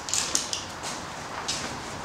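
A few short, hissy scrapes and rustles of hands handling things: a quick cluster at the start and two more about a second and a half in.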